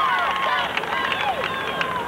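A marching band's last held brass notes dying away in the first second or so. Then a crowd of voices takes over from the stands, with a few scattered sharp claps or taps.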